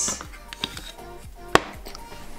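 Small wooden keepsake box being handled: a few light wooden taps, then one sharp clack about one and a half seconds in.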